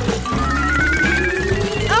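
Background music with a comic sound effect: a rising tone that climbs slowly and steadily for nearly two seconds, the kind of effect that accompanies a bowl filling up with milk.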